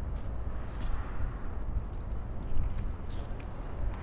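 Outdoor city background: a steady low rumble with a few faint, short clicks.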